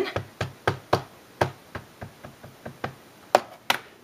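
A clear stamp being inked: an ink pad tapped again and again against the stamp, about a dozen light taps roughly three a second, with two sharper knocks near the end.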